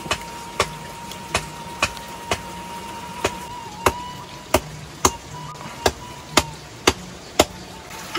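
A series of sharp knocks, roughly two a second at uneven spacing, with a steady high tone behind most of them that stops near the end.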